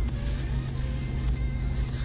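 Music over the steady low rumble of a Ford EcoSport's engine and tyres heard from inside the cabin while driving.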